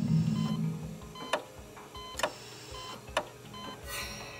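Title sting for a medical segment: a low drone with short electronic beeps and three sharp hits about a second apart.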